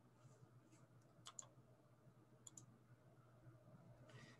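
Near silence with faint computer mouse clicks: two quick double clicks about a second apart, as the presentation is advanced to the next slide.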